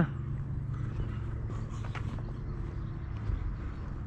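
Footsteps of someone walking, faint and irregular, over a steady low rumble.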